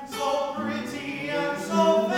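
Tenor singing in classical style with classical guitar accompaniment. After a short break at the start, a new sung phrase begins.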